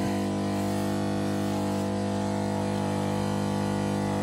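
Steady electric hum of the TKS de-ice system's fluid pump running, several constant tones that hold without any change in pitch or level.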